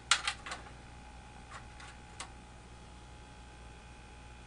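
A few light sharp clicks of test leads and clips being handled, three close together at the start and two more single clicks a little later, over a steady low hum.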